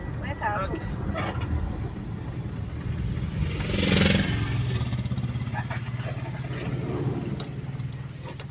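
Vehicle engine and road noise heard from inside the cabin while driving: a steady low drone, with a louder rushing swell about halfway through, like passing traffic.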